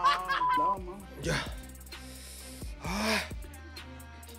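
A short spoken word and two breathy exhalations over quiet background music with steady low held notes.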